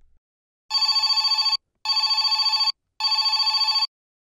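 Telephone ring sound effect: a trilling ring in three bursts of about a second each, with short gaps, signalling an incoming call.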